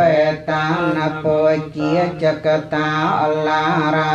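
Buddhist monks chanting Pali verses in a steady, sing-song recitation of held syllables.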